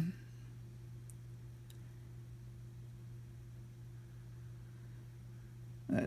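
Quiet room tone: a low steady hum with two faint ticks, one about a second in and one shortly after.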